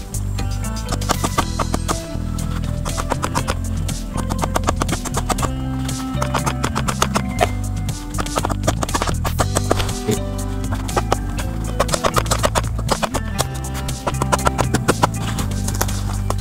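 Background music with a steady beat, over irregular runs of sharp knocks from a machete chopping through a guava branch.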